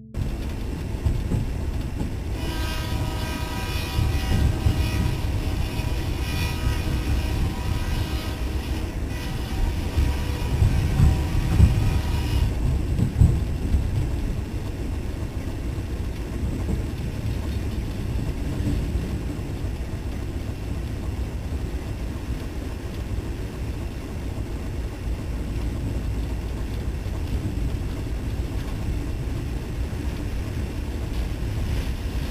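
A moving train heard from on board, with a steady low rumble throughout. The train's horn sounds in one long, several-note blast from about two seconds in until about twelve seconds in.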